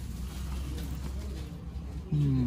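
A steady low hum under faint even background noise.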